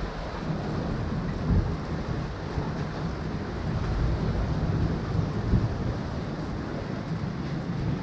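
Wind buffeting the microphone: a steady low rumble, with two louder thumps, one about a second and a half in and another around five and a half seconds.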